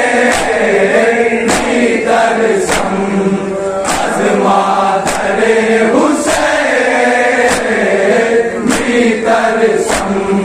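Men's voices chanting a noha together, with a crowd's open hands striking their chests in unison (matam) about once every 1.2 seconds: a sharp slap on each beat, nine in all.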